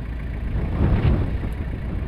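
Toyota Hilux driving across flat desert sand: a steady low engine and rolling rumble, swelling a little about a second in.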